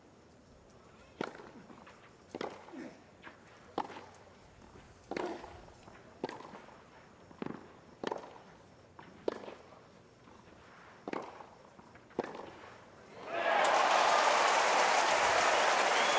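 A long tennis rally on a clay court: about eleven racket strikes on the ball, a little over a second apart. About thirteen seconds in, a crowd bursts into loud cheering and applause as the point is won.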